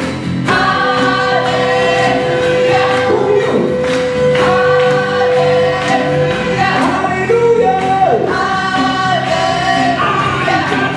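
Live band playing an upbeat worship song: voices singing over acoustic guitar and a djembe. One high note is held steady for about five and a half seconds in the first half.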